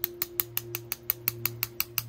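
A paintbrush tapped rapidly against a pencil, about six sharp clicks a second, spattering speckles of watered-down white gouache onto a painting.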